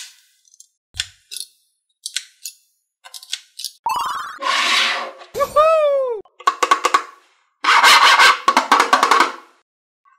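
A string of added cartoon sound effects: a few short clicks early on, a burst of noise about four seconds in, a pitch glide that falls and rises again, then rapid choppy voice-like bursts in the last few seconds.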